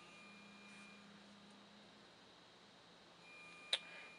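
Near silence: faint room tone with a low steady electrical hum, and a single short click near the end.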